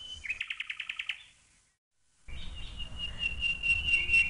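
Small birds chirping: a quick run of about ten high chirps in the first second. The sound then cuts out completely for a moment, and a long, steady high note comes back with further chirps over it.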